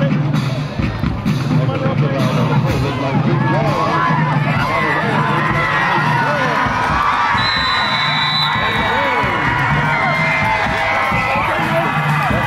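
Football crowd in the stands cheering and shouting, many voices overlapping, during a play. A short high steady whistle tone sounds about seven and a half seconds in.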